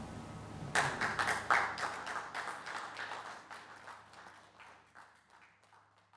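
Audience clapping. It breaks out about a second in, is loudest at the start, then thins out and fades away.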